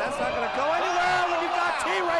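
Excited voices calling out over crowd noise from a small-arena wrestling broadcast as a wrestler dives out of the ring.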